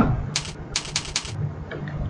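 A quick run of about six computer mouse clicks in the first half, a spreadsheet's decimal-place button being clicked repeatedly.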